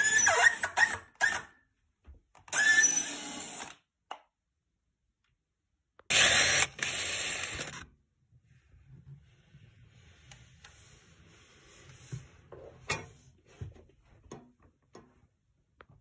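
Power drill with a long drill bit boring through an 18 mm wardrobe carcass panel, run in three bursts of one to two seconds each. After the third burst come only faint knocks and small clicks.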